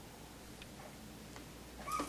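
A five-week-old puppy gives one short, high whimper near the end, over otherwise quiet room noise.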